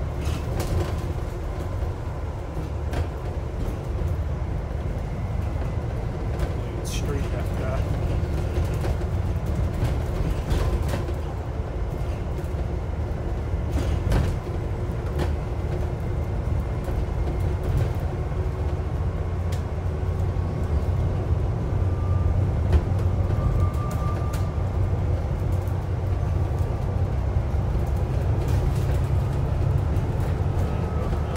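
Alexander Dennis Enviro400 MMC double-decker bus under way, its engine and drivetrain running steadily as heard from inside on the upper deck, with occasional sharp clicks from the bodywork.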